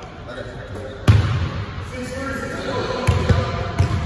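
Basketball bouncing on a hardwood gym floor: a thud about a second in and three more in quick succession near the end, in an echoing hall with players' voices behind.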